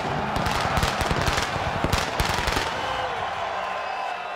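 Arena pyrotechnics going off in a rapid string of sharp bangs over a loud crowd. The bangs stop about two-thirds of the way through.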